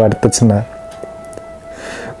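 A man's speech stops about half a second in, leaving a single held note of soft background music; a sharp intake of breath comes near the end, just before he speaks again.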